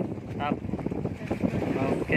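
Wind buffeting the microphone in a steady rumble, with a couple of brief snatches of a person's voice.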